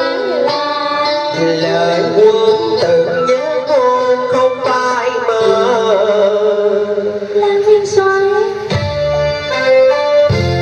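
Cải lương hồ quảng stage music: a traditional accompaniment with plucked strings bending their notes under a singing voice. Near the end, deeper keyboard chords come in.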